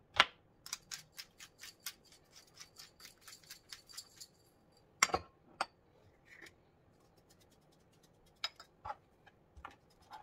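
Raw lamb chop slapped down on a cutting board, then a quick run of light rattling clicks as salt and pepper are shaken over the chops. Two sharp knocks come about five seconds in, and a few more clicks near the end.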